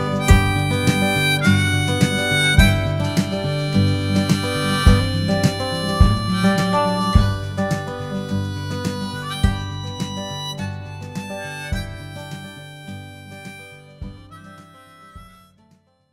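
The song's instrumental ending: harmonica holding melody notes over acoustic guitar, with a steady beat about once a second. It fades out gradually, reaching silence just before the end.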